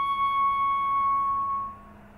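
Concert flute holding one long, steady high note that dies away just before the end.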